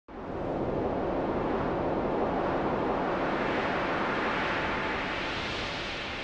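A steady rush of noise like sea surf that starts abruptly and thins slightly toward the end, with no melody or beat.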